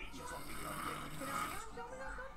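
A puppet character's long, noisy nasal snort, lasting about a second and a half, in the film's soundtrack.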